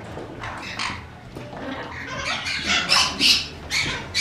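Parrots squawking in several short, harsh bursts.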